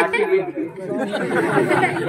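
Speech only: voices talking over one another in a stage comedy dialogue.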